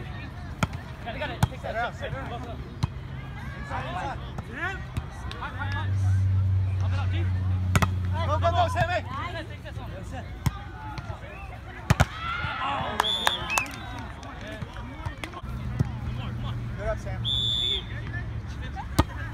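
A volleyball struck again and again by players' hands and forearms during a rally: several sharp slaps, the loudest two close together about twelve seconds in, with players shouting and calling between the hits.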